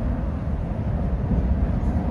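Cabin running noise of a Stadler ETR 350 electric train: a steady low rumble from the bogies, coming through the gangway between cars, which should have been closed off. Heard inside, it is a racket.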